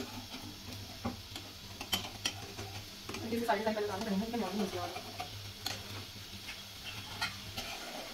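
A spatula scraping and tapping in a non-stick frying pan as scrambled egg with vegetables is stirred, with irregular clicks over a light sizzle of the egg frying.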